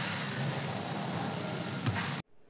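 Steady background noise hiss with one brief click near the end.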